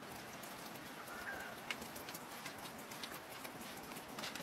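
Light taps and clicks from a wooden board and food being handled on an outdoor table, scattered over a faint background hiss, with a short chirp about a second in.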